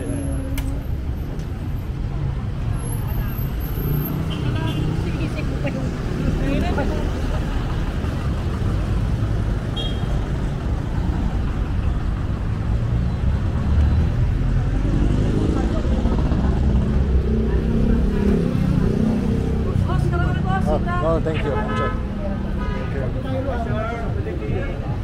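Street ambience: a steady rumble of passing cars and motorcycles, with passers-by talking, their voices louder near the end.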